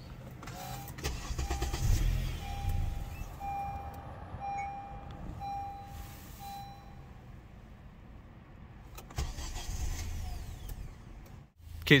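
Honda Accord start attempt: the engine cranks and catches briefly, then sputters and bogs out, because the throttle valve is not opening fully (throttle actuator fault, code P2101). A second weaker attempt comes near the end. A dashboard warning chime beeps repeatedly through the first half.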